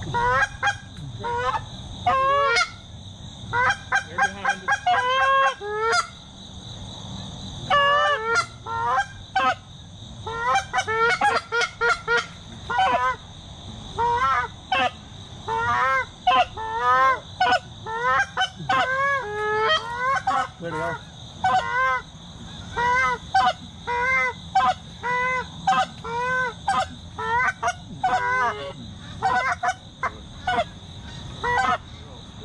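Canada geese honking and clucking in quick, overlapping series of short calls, each rising and falling in pitch, over a steady high-pitched drone.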